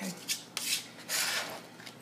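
A chef's knife chopping and scraping fresh parsley on a thin plastic cutting sheet over a stone counter: a few short rasping strokes.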